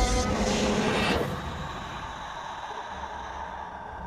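Cinematic sound effect from an animation soundtrack: a loud rushing noise for about the first second, dropping into a low, steady rumble.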